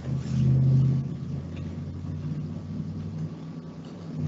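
Steady low hum, a little louder during the first second, with faint room noise over it.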